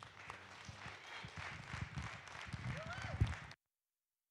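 Audience applauding, with footsteps thudding on the stage underneath; the sound cuts off abruptly about three and a half seconds in.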